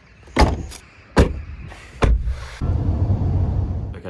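Volkswagen Tiguan at its tailgate: three sharp clunks about a second apart, then a steady low hum over the last second and a half.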